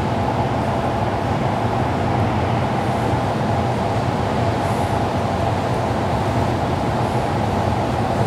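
A steady mechanical rumble with a low hum and a faint steady tone, unchanging throughout.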